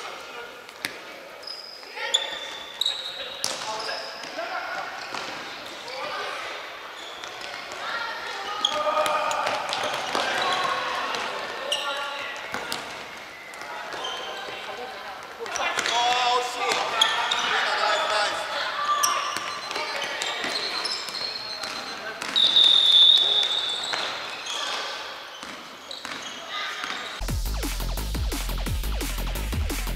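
A futsal ball being kicked and bouncing on a wooden sports-hall floor, with players calling out to one another across a large hall. Electronic music comes in just before the end.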